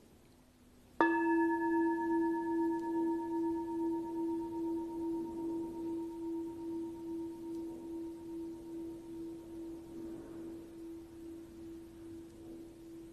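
A bowl bell struck once about a second in, then ringing on with a slow pulsing beat, about twice a second, as it fades; its higher overtones die away within a few seconds while the low main tone lingers.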